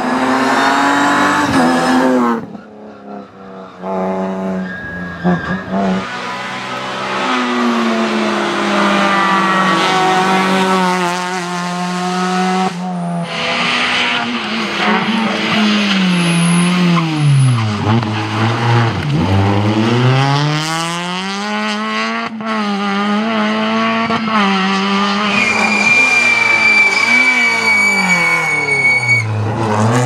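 Rally car engines at full throttle, revving hard and climbing through the gears, several cars one after another. Twice the revs drop deeply and climb again as a car brakes into a corner and powers out, and a high steady squeal, most likely the tyres, runs near the end.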